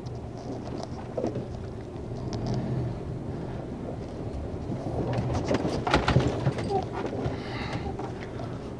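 Heavy truck's diesel engine running at low revs, a steady low hum heard from inside the cab, with a few short knocks about five to six seconds in.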